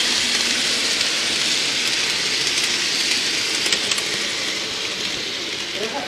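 An N scale model camera car running along the track, heard close up as a steady rushing hiss of wheels on rail, with a few light clicks about halfway through.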